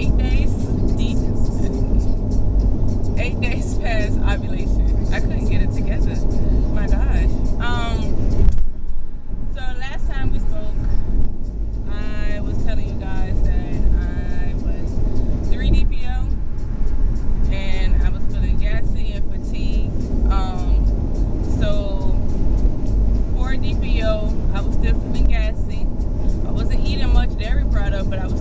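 A woman talking inside a car's cabin over a steady low rumble of engine and road noise, with a brief break about eight and a half seconds in.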